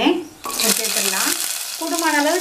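Peeled shallots dropped into hot oil with mustard seeds and curry leaves, setting off a sizzle that starts suddenly about half a second in and keeps going.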